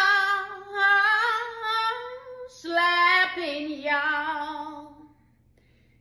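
A woman singing unaccompanied: a long note drawn out with vibrato on the word "start", rising slightly, then a second, lower sung phrase that ends about five seconds in.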